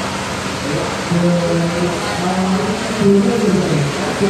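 Indistinct voices of people talking in the background over a steady hiss of room noise.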